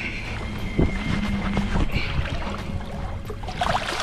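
Steady low wind rumble on the microphone, with water moving against the side of a small boat.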